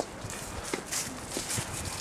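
Footsteps walking along a pavement strewn with fallen leaves: a run of short knocks, two or three a second.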